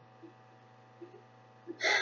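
A pause filled with quiet room tone and a steady low electrical hum, with a few faint ticks; a woman's voice starts again near the end.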